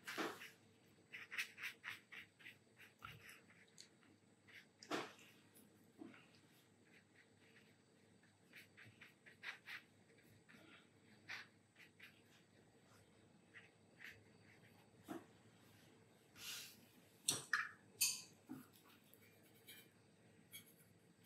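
Very quiet room with faint, scattered taps and scratches of a watercolour brush working on paper, a few slightly louder clicks near the end.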